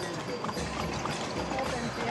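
Hoofbeats of a mule clip-clopping along during a ride, with voices faintly in the background.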